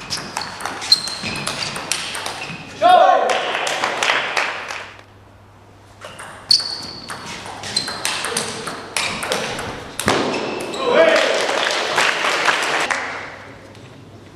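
Two table tennis rallies: the ball clicks off the paddles and table in quick, irregular succession. Each rally ends with a loud shout and a couple of seconds of crowd noise from the hall.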